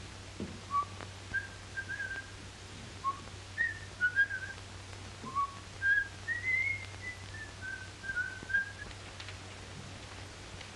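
A man whistling a tune in short, clear notes that step up and down, with a longer rising phrase about six seconds in, stopping near the end. A steady low hum runs underneath.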